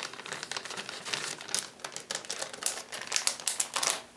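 Plastic packaging of soft-plastic fishing baits being handled: irregular crinkling with many small sharp clicks.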